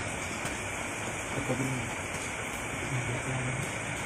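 A steady hiss throughout, with a thin high tone held in it. Faint, indistinct voices speak briefly about one and a half seconds in and again around three seconds.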